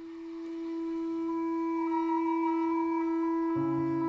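Freely improvised woodwind duet of a Māori wooden flute (taonga pūoro) and clarinet: one long held low note under a higher line moving in small steps between a few pitches, with lower notes joining near the end.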